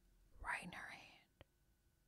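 A person whispering faintly for about half a second, starting about half a second in, then a single small click. The rest is near silence.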